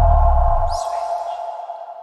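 Electronic logo sting: a deep boom dies away within the first second, with a short high swish about half a second in, while a ringing tone fades slowly.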